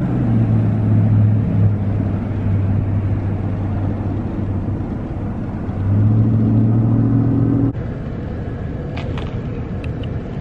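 A steady low engine hum with a single held pitch, like a motor idling close by. It drops away suddenly about three-quarters of the way through, leaving a softer rumble of outdoor background noise.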